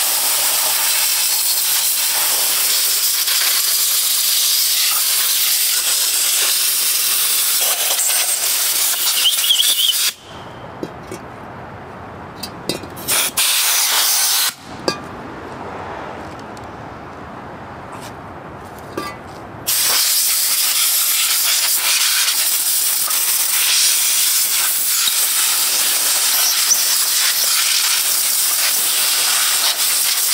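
Compressed-air blow gun hissing as it blows gasoline and loosened grime off a soaked small-engine cylinder block. One long blast of about ten seconds, a pause, a short burst about thirteen seconds in, another pause, then a steady blast again from about twenty seconds on.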